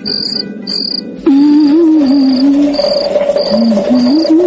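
Crickets chirping in an even rhythm, about two chirps a second, under background music. A little over a second in, a louder, slowly wavering melody comes in and carries on over the chirping.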